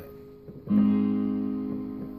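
Yamaha Portable Grand digital keyboard: an A-flat major chord struck about two-thirds of a second in, then held and slowly fading.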